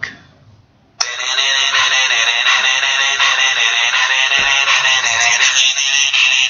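A mobile phone ringing with a music ringtone, starting abruptly about a second in and playing on steadily with a thin sound.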